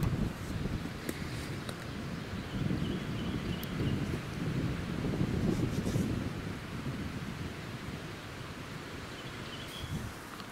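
Wind gusting over the microphone, a low uneven rumble that rises and falls, with leaves rustling in the trees.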